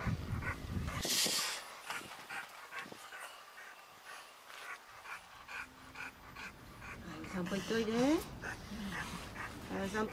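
A dog panting in short, even breaths, with a couple of brief rising whine-like sounds about seven to eight seconds in.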